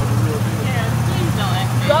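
Steady low hum of a moving golf-cart-style shuttle cart, with people talking over it from about half a second in.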